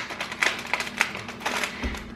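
Plastic snack packet being torn open and crinkled by hand, in a run of irregular sharp crackles, with a low thump near the end.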